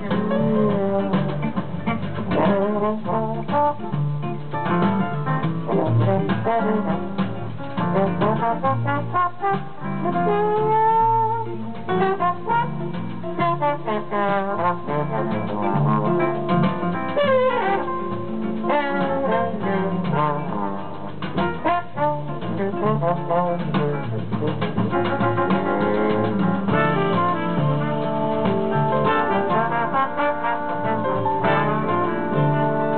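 Live jazz band: a trombone leads the melody over double bass, guitar and piano. A few seconds before the end, the other trombones and trumpets come in together with fuller held chords.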